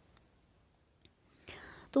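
Near silence for about a second and a half, then a short breath drawn in, after which speech resumes at the very end.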